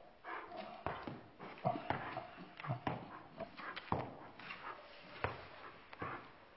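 Irregular knocks and clomps of a small dog's rubber-soled dog boots on a hardwood floor as it high-steps in them, unused to the boots, with a few loud knocks each second.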